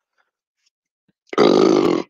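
A man belches once, loudly, for a little under a second, starting about a second and a half in.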